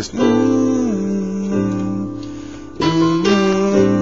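Digital keyboard playing slow, sustained chords: a chord struck at the start, then a fresh chord about three seconds in. It is the second section of a worship-song arrangement, a C add9 voicing over an A bass moving to G suspended with the octave.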